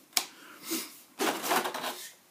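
Clear plastic packaging crinkling as it is handled: a sharp click just after the start, then two spells of crackling rustle, the second one louder.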